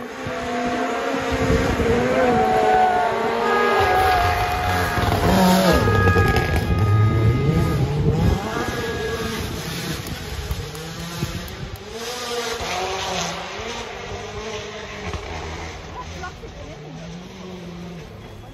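A rally car's engine at high revs, pitch rising and dropping with gear changes. It grows louder over the first six seconds or so, then fades as the car goes past and away.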